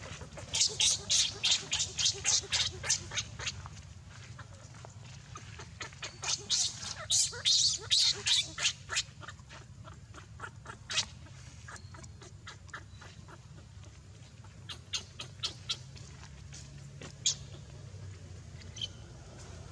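Baby macaque crying in rapid series of short, high-pitched squeaks, in three bouts: one in the first few seconds, a second around the middle, and a shorter one near the end.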